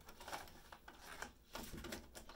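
Tarot cards being shuffled by hand: a faint, irregular run of soft card clicks and flicks.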